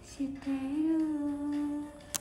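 A young woman humming with closed lips: a short note, then a longer held note of about a second and a half that rises slightly and then stays steady.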